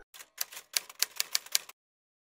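Typewriter key-click sound effect: about ten quick, sharp clicks over a second and a half, then it stops. The clicks accompany text being typed onto a title card.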